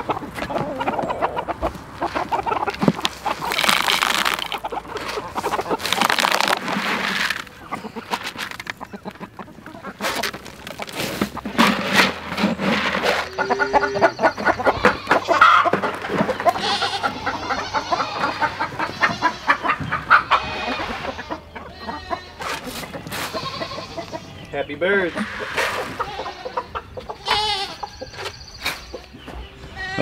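A flock of chickens and roosters clucking and calling.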